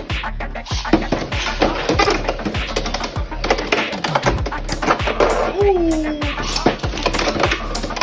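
Beyblade tops spinning and colliding in a plastic Beyblade X stadium: a rapid, uneven clatter of clicks and knocks, over background music with a steady beat.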